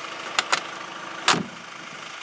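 Push-button exterior door handle and latch of a 1987 Mercedes-Benz G-Wagen (240 GD) being worked: two quick sharp clicks, then a single louder clack a little over a second in. This is the G-Wagen's signature mechanical door-latch sound, heard over a faint steady hum.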